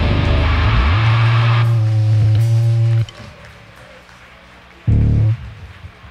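Hardcore band playing live, loud guitars, bass and drums together; the full sound thins out about a second and a half in, leaving a held low note that is cut off sharply at about three seconds, the end of a song. After a quiet gap comes one short, loud low bass hit near the end.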